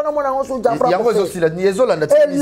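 Speech only: a person talking steadily in conversation, with no other sound standing out.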